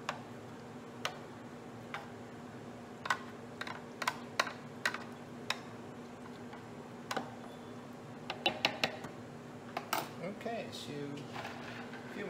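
Light, irregular clicks and taps of a clear plastic food container on a wooden cutting board as fish pieces are turned and pressed in a marinade, with two brief clusters of quicker taps. A steady low hum runs underneath.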